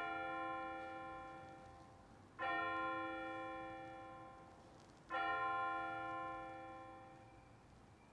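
An altar bell struck three times, about two and a half seconds apart, each ring dying away, marking the elevation of the consecrated host.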